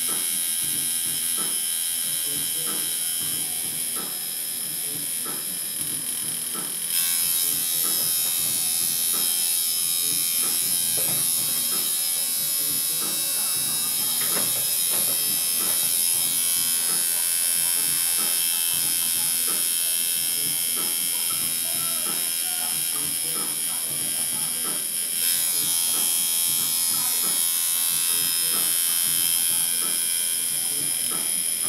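Electric tattoo machine running steadily, a continuous high buzz that grows louder about seven seconds in.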